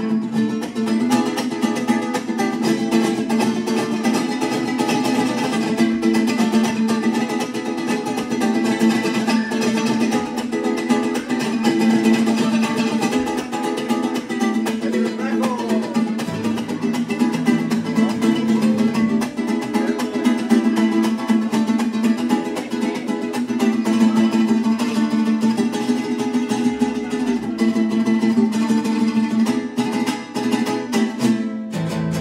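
Mariachi strings playing without singing: a vihuela strummed in a fast, steady, percussive rhythm over sustained chords.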